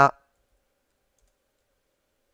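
A woman's voice ends a word right at the start, then near silence: room tone.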